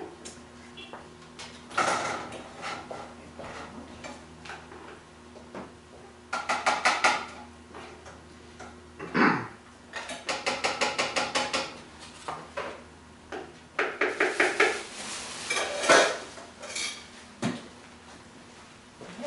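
A cooking utensil stirring and scraping in a pan on the stove, in quick runs of clicking strokes, about eight a second, three runs in all, among scattered kitchen clatter.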